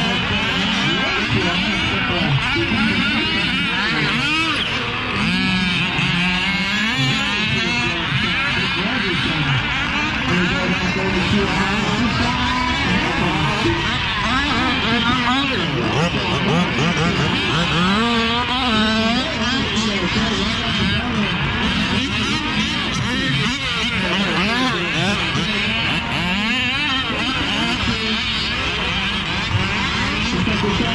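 Several small two-stroke engines of large-scale RC off-road cars revving up and down as they race around a dirt track, their overlapping whines rising and falling constantly.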